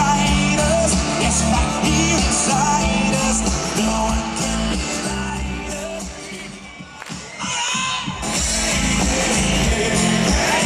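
Live rock band playing, with singing over the music. The music drops away briefly about seven seconds in, then picks up again.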